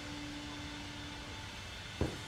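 Steady background noise with a faint continuous hum; no distinct event.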